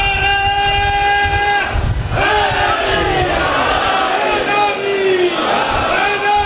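A man's voice chanting a melodic recitation over a microphone, holding one long steady note near the start and then moving through drawn-out, wavering sung phrases, with crowd voices.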